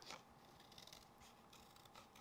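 Faint snips of small scissors cutting through thin card.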